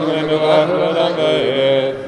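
Male voice chanting Hebrew liturgy in a sustained melodic line, holding notes and sliding between them, breaking off near the end.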